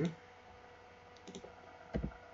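A few soft computer keyboard keystrokes over quiet room tone: light clicks about a second and a half in and one sharper click just before the end.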